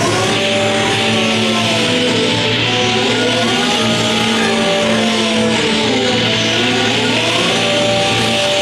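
Live band playing a psychedelic drone piece: a steady low drone under a chord of tones that slowly glide up and then back down, swelling about every three to four seconds.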